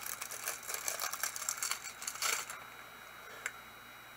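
Packaging of a small miniature being opened by hand: a run of quick crackling and rustling for about two and a half seconds, then quieter, with a single small click shortly before the end.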